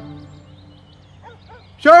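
A soft guitar music cue ends right at the start, leaving faint outdoor ambience with a few small bird chirps. A man starts speaking near the end.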